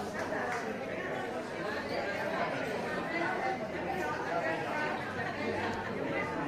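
Indistinct chatter of many people talking at once in a large indoor hall, with no single voice standing out.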